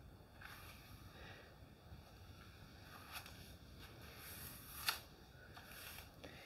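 Faint brushing of wet hair with a styling brush, soft irregular rustling strokes, with a short sharper snap just before five seconds in.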